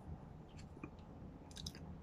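Near-quiet room with a few faint, soft clicks: a couple around the middle and a small cluster near the end.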